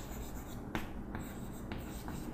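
Chalk writing on a chalkboard: a run of short scratching strokes and light taps as a word is written out.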